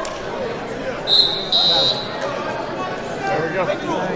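Referee's whistle about a second in, a short blast and then a longer one, starting the bout; hall chatter underneath.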